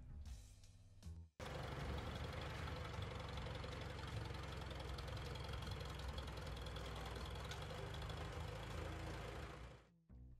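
International Harvester 300 Utility tractor's gasoline engine running steadily as the tractor is driven. It comes in abruptly a little over a second in, after a quieter start, and cuts off just before the end.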